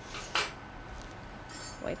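Metal surgical instruments being handled: a short sharp rustle about a third of a second in, then a light high metallic clink near the end.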